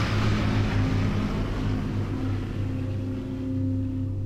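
Opening soundtrack: a wide rushing rumble fades away slowly over a low, steady droning chord.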